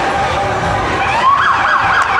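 A siren sounds from about a second in, rising and then yelping rapidly up and down, over the steady noise of a street crowd.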